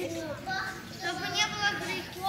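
A child's voice answering a question, faint and away from the microphone, heard in a large hall.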